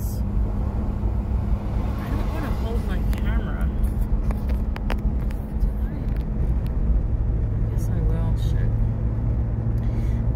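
Steady road noise heard inside a car cruising on a highway: tyre and engine rumble with a low droning hum that grows stronger about seven seconds in.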